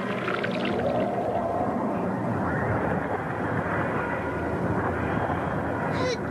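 Animated sound effect of a psychic energy surge: a steady, dense rushing noise with faint wavering tones gliding through it.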